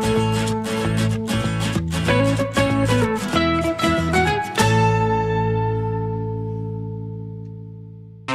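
Background music with a quick, steady rhythm of plucked notes. About halfway through it ends on a final chord that rings out and slowly fades away.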